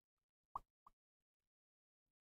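Near silence broken by two short, high plops about a third of a second apart, the first louder.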